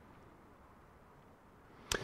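Near silence: faint room tone in the hall, then a brief sharp sound near the end as the man's voice starts again.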